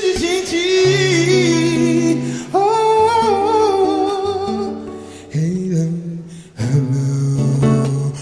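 Male singer holding long, slightly wavering vocal notes over a nylon-string acoustic guitar in a live acoustic performance. About two-thirds of the way in, strummed guitar chords come in louder.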